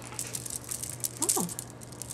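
Pearl and metal beads of a bracelet clicking and rattling against each other as it is handled, in a run of quick small clicks. A short falling vocal murmur sounds about a second in.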